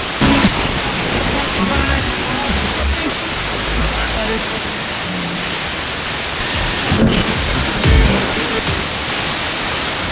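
FM car radio scanning up the band, giving steady static hiss with faint fragments of distant stations' music and speech fading in and out. The stations are long-distance signals carried by sporadic-E propagation.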